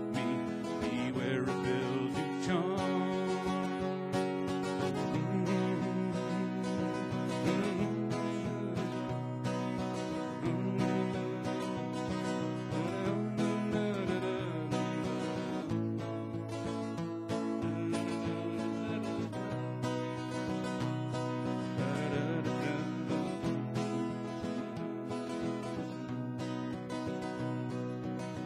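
Acoustic guitar playing a country instrumental break between verses of the song, with a steady bass line under the melody.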